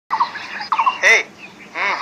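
Domestic chickens clucking: a short run of quick clucks, another about three-quarters of a second in, and a louder call about a second in. A voice begins just before the end.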